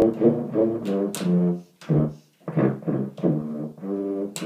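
Solo tuba playing a slow Christmas tune: a string of short, separate low notes that change pitch, with a brief break about halfway through.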